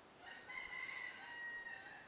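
A rooster crowing once: a single long call of about a second and a half.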